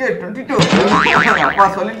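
Men's voices in a drawn-out, playful exclamation whose pitch wavers up and down, amid laughter.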